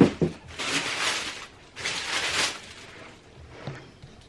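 A sharp knock, then two rustling spells of about a second each and a faint click near the end: handling noise from the camera being reached for and touched.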